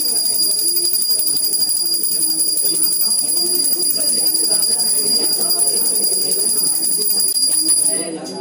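Temple hand bell rung rapidly and without pause during the aarti lamp offering, a steady high ringing with quick even strokes.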